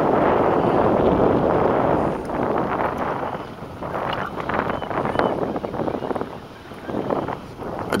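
Wind buffeting the microphone on an open boat on the water. It comes in gusts, heaviest over the first two seconds, then easing and dipping before picking up again near the end.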